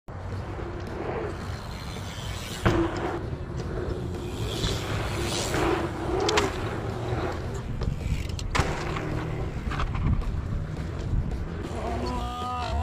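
Dirt-jump mountain bikes rolling over packed dirt, with a steady low rumble throughout and two sharp knocks, about a quarter of the way in and again about two-thirds in.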